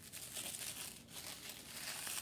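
Black wrapping paper crinkling and rustling in the hands as a wrapped candle is handled and unwrapped: a soft, continuous run of small crackles.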